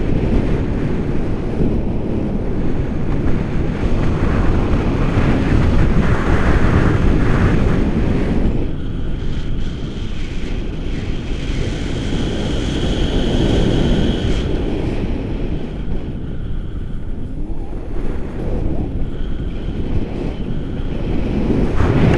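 Airflow rushing over a selfie-stick camera's microphone in paraglider flight, a loud rumbling buffet that rises and falls with gusts and eases a little in the middle.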